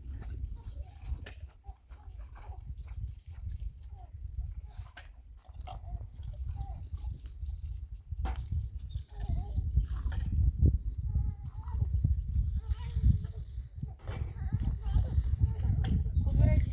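Rural outdoor ambience with faint livestock calls and a few light clinks of dishes being washed by hand, over a low rumble that grows louder in the second half.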